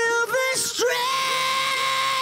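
Soloed rock lead vocal, a high male voice singing short syllables and then holding one long steady note from about a second in, run through a quarter-note ping-pong stereo delay with its lows and highs filtered off.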